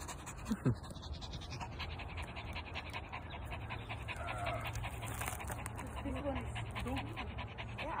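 A dog panting rapidly and evenly close to the microphone, with a low steady drone underneath and faint pitched voices in the distance.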